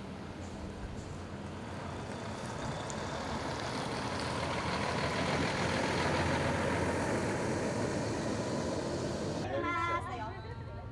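A Hato Bus double-decker sightseeing bus driving past, its engine and tyre noise growing louder toward the middle as it goes by. Voices come in just before the end.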